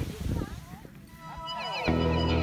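The tail of voices fades out, then a background music track comes in. Gliding tones sweep in first, and the full track with a steady bass line starts just before the end.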